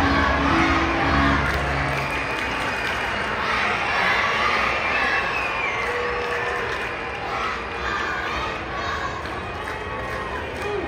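Ballpark crowd noise: many voices chattering, cheering and shouting together. Stadium PA music ends about two seconds in.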